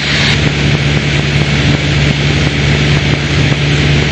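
Piper Warrior's four-cylinder engine and propeller droning steadily in cruise, heard inside the cabin as a constant low hum with rushing air noise.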